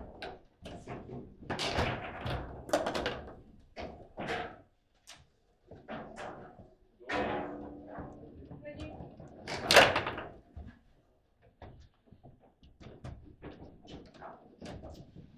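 Table football play: the hard ball being struck by the plastic figures and knocking off the table's walls, with rods clacking as they are slid and spun. It is an irregular run of sharp knocks, the hardest strike about ten seconds in.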